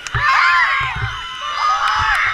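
A group of girls cheering and shouting excitedly, many high voices overlapping in squeals and whoops, with a few low thumps in the first second.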